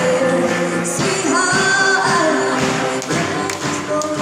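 A live band playing amplified music: a singer over electric guitars and a drum kit.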